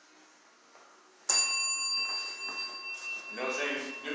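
A bell struck once about a second in, ringing on for several seconds in a few steady tones.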